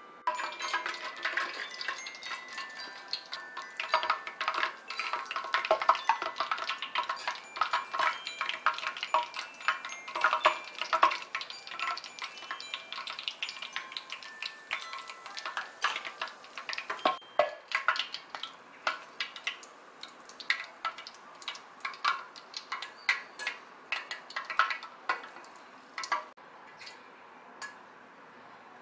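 Doughnuts deep-frying in hot oil: a dense crackling, popping sizzle that thins to scattered pops in the second half and dies away near the end.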